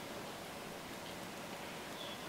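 Steady low hiss of room tone with no distinct events.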